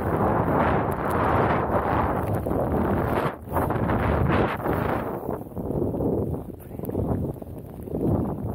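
Snowboard sliding and turning through deep powder snow: a rushing hiss mixed with wind buffeting the microphone, dipping briefly about three seconds in and rising and falling with the turns after that.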